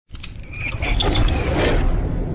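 Sound-design effects for an animated logo intro: a run of sharp mechanical clicks and ratcheting, with short metallic tones, over a low rumble that builds in loudness.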